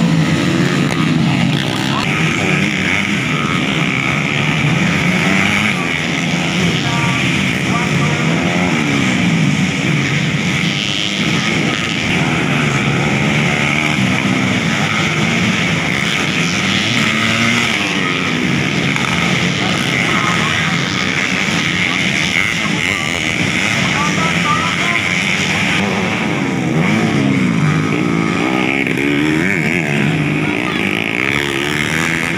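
Several dirt bikes racing on a motocross track, their engines revving up and down again and again as they pass through the corner.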